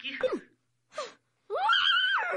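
A woman's long, high-pitched cry of exasperation, rising in pitch and then held, starting about a second and a half in after a man's pleading line ends.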